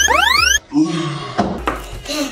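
Edited-in cartoon sound effect: a rising, whistle-like boing sweep that cuts off abruptly about half a second in. A low, voice-like sound follows for nearly a second.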